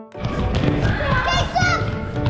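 Young children shouting and squealing as they play soccer in a large, echoing gym, with thuds of feet and ball on the hardwood floor. The noise starts suddenly just after the opening music stops.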